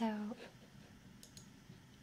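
Computer mouse button clicked twice in quick succession, faint, a little over a second in.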